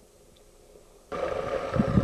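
About a second of very faint background, then an abrupt start of steady rushing water: the dam's overflow water running out of a rusty pipe. There is a low rumble in it, strongest near the end.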